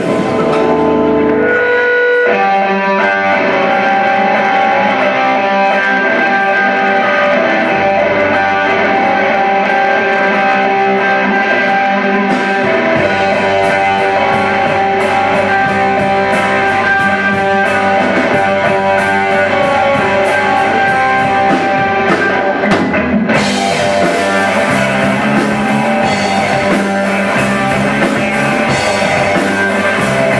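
Live rock band playing loudly: two electric guitars and a drum kit. A few held guitar notes open, the full band comes in about two seconds in, and there is a brief break about three-quarters of the way through before it carries on.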